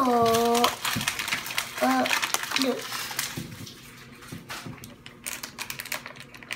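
Foil blind-bag packets crinkling and rustling as they are handled, with irregular small clicks, fading toward the end.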